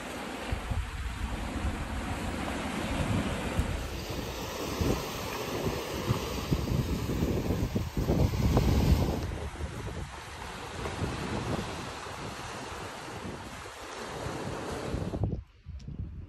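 Sea waves washing against a rocky shore, with wind buffeting the microphone. The sound changes abruptly about four and nine seconds in, and becomes much quieter a second before the end.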